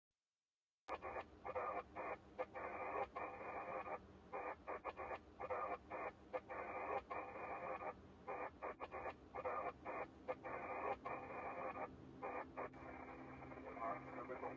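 Opening of a dark ambient space track: choppy bursts of radio static, like a garbled radio transmission, starting about a second in and cutting in and out several times a second over a faint low drone.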